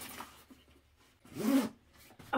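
Zipper on a fabric tote bag pulled once in a short burst about one and a half seconds in, after faint rustling of items being packed into the bag.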